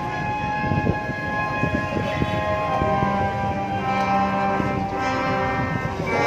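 Marching band's brass section holding long sustained chords, the held notes shifting about halfway through, with a few drum hits underneath.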